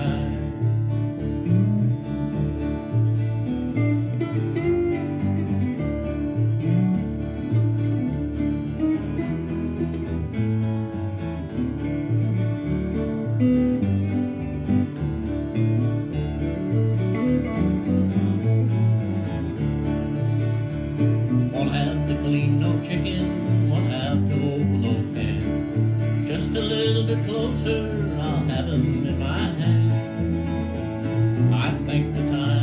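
An acoustic guitar and an electric guitar playing a country song together at a steady rhythm.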